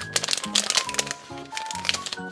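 Foil blind-bag packet crinkling and crackling as it is handled open and the figure is pulled out, over cheerful background music with a steady beat.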